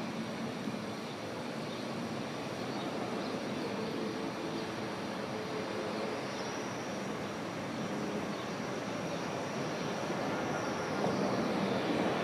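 Cable-hauled funicular car running along its rails: a steady rolling rumble with a faint steady whine, growing a little louder near the end as the car comes closer.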